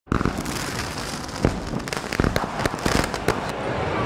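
A quick, irregular run of sharp cracks and pops over a steady background noise, thickest between about one and a half and three and a half seconds in.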